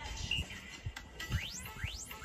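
Background music with a steady low beat; in the second half, rising sweeping tones repeat about twice a second.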